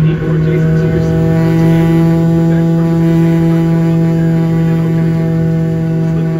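Boeing 737-900ER's CFM56-7B jet engines at idle, heard inside the cabin: a loud, steady low hum with a layer of steady whining tones above it, and a few more tones joining about a second in.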